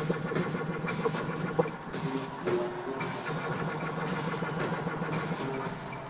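Live synthesizer music played on keyboards, heard from the arena stands: a steady low drone under a repeating higher note pattern, with the drone dropping out briefly about two seconds in.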